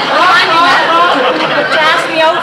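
People talking, voices overlapping one another.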